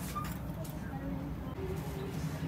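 Shopping cart wheels rolling over a store floor, a steady low rumble, with faint background music and distant voices above it.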